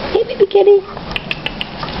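A very young kitten mewing: two short, thin mews in the first second, followed by a few faint ticks.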